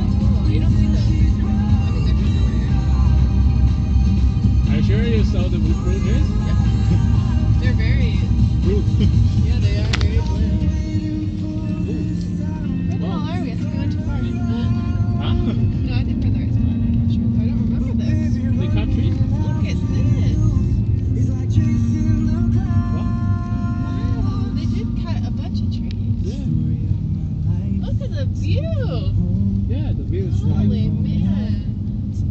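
Car radio playing a song with singing, heard inside a moving car's cabin over the low rumble of road and engine noise. The rumble drops noticeably about ten seconds in.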